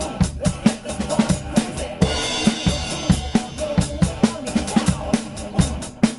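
Acoustic drum kit played over a pop backing track: a steady kick-and-snare groove, with a cymbal crash about two seconds in that rings on and slowly fades.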